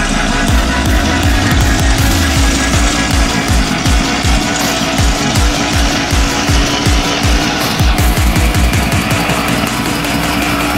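Small 50 cc two-stroke engine running with a fast rattle, mixed with loud rock-style music throughout.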